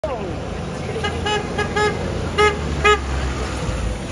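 Kenworth cab-over box truck's horn giving six short toots in quick succession, the last four loudest, over a low idling and traffic rumble.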